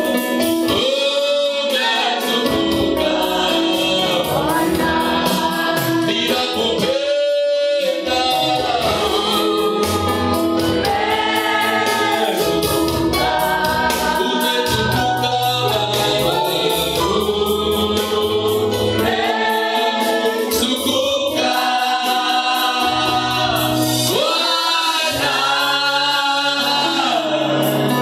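A gospel worship song sung by a group of voices led by a worship team on microphones, over instrumental accompaniment with sustained bass notes and a steady beat.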